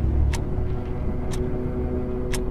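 Horror intro sound design: a deep rumbling drone under a couple of held low tones, with a sharp tick about once a second.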